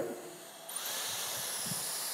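Dyson Airstrait hair straightener switching on about two-thirds of a second in, set to wet mode. Its motor whine rises in pitch as it spins up, then holds steady under a steady rush of air.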